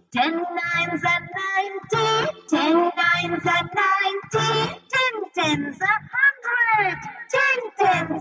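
A children's multiplication-table song: a child's voice singing the table of ten, the lines for ten nines and ten tens, over a backing track with a regular beat.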